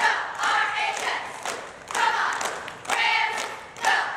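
A group of girls shouting a cheer in unison, one loud call about every second, with sharp hand claps between the calls.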